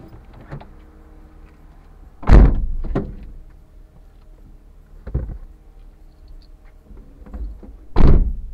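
Several heavy thuds, the loudest about two seconds in and at the very end, with smaller knocks between, over a steady low hum.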